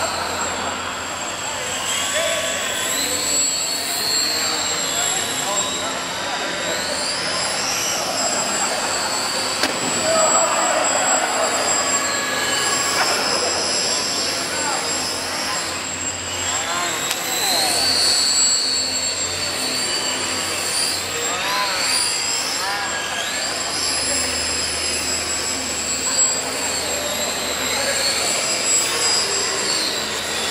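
Several small electric RC aircraft motors and propellers whining, their pitch rising and falling again and again as the throttles change, over a steady high tone.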